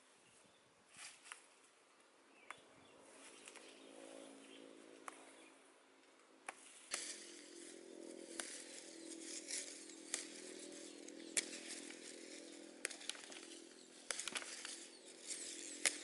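A faint, steady small engine running, strengthening about seven seconds in, with leaves rustling and sharp snaps of cassava stems and leaves being picked by hand.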